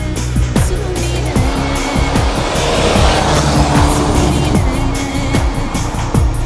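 Electronic music with a steady beat, with a rally car's engine and tyres on snow swelling under it about halfway through as the car slides past.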